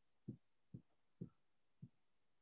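Near silence broken by four faint, short low thumps, about two a second.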